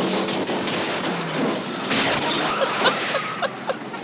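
Film soundtrack of cars driving down a long flight of stone steps during a car chase: a dense, continuous clatter and rattle of the car bodies bouncing from step to step.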